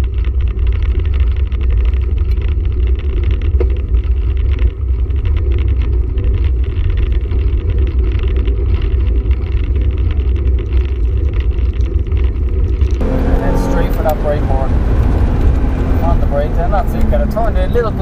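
Heavy wind rumble buffeting a bicycle-mounted action camera as it rolls down a road. About thirteen seconds in it changes to a car's engine heard inside the cabin, with a voice over it.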